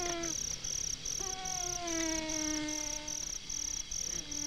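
A man's voice chanting an Arabic funeral prayer in long held notes; the second note starts about a second in and slowly sinks in pitch. Insects chirp steadily behind it, about three pulses a second.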